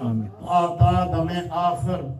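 A man's voice intoning a Muslim supplication (dua) in a melodic, chant-like recitation, drawing out held notes, with a short break about half a second in.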